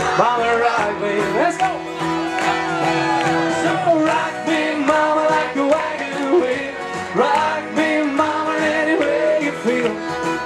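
Live country band playing upbeat bluegrass-style music with singing, and a crowd clapping along.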